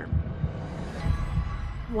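Tense background score built on a low, repeating pulse, a few thumps a second, under a faint sustained pad.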